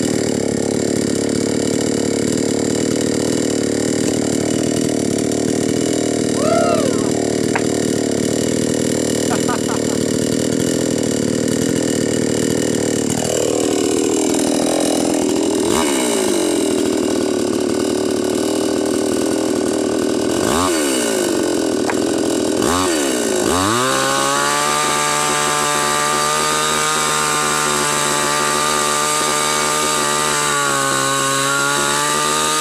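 Two-stroke gasoline chainsaw running continuously. Around the middle its engine pitch dips and rises several times as the throttle is worked, then from about 24 s it holds a steady high pitch while cutting into a tree trunk.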